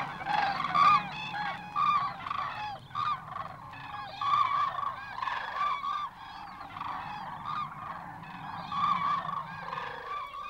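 A large flock of common cranes calling, with many short, overlapping calls at once. The calling thins a little past the middle and builds again near the end.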